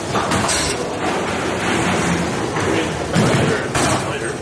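Bowling alley din: a steady background of rolling and machinery noise with several sharp knocks and clatters, typical of balls striking pins on the lanes.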